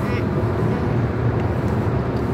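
Steady low road and engine rumble inside the cabin of a moving car.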